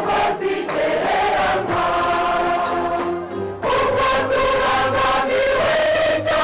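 Church choir singing a hymn of thanksgiving to God in several voice parts, holding long chords. The sound dips briefly about three and a half seconds in before the next phrase begins.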